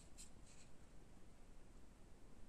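Near silence with two faint, brief scratchy sounds near the start: fingers handling a small plastic Zigbee sensor while pressing its button.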